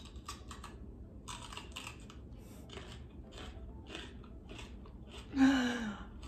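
A run of soft, quick clicks and taps, a few a second, then about five seconds in a man's short, loud vocal outburst that falls in pitch, as in a laugh.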